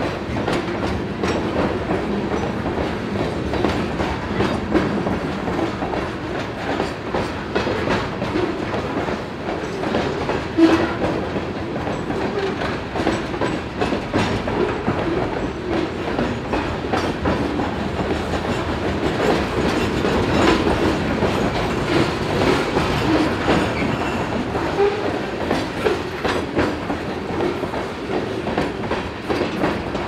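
Reading & Northern coal hopper cars, loaded with coal, rolling steadily past, their wheels clicking and clattering over the rail joints with a continuous rumble and one sharper clack about ten seconds in. The last car passes near the end.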